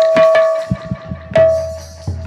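A large barrel drum played by hand: a quick run of strokes, then a gap and one heavy stroke about one and a half seconds in with a deep booming low note and a ringing overtone that fades away.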